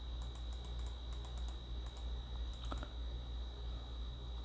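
A run of light, quick clicks from a computer keyboard and mouse, over a steady low hum and a thin high-pitched whine.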